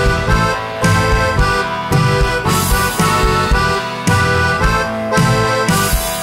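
Instrumental opening of a rock band's song, before the vocals: an accordion-like melody over bass and drums, with a steady beat.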